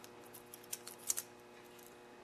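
Saw chain clicking faintly as it is handled and fed around a Stihl guide bar: a few small metallic clicks of the links, about three quarters of a second and a second in, over a faint steady hum.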